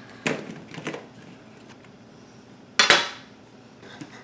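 Squash and zucchini spears set down on a parchment-lined metal baking sheet: two soft knocks in the first second, then a louder, sharper knock a little before the three-second mark.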